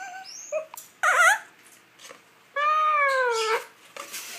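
Lutino Indian ringneck parakeet calling: a few short chirps, then a loud wavering squawk about a second in, then a long high-pitched drawn-out call that rises and falls near the end.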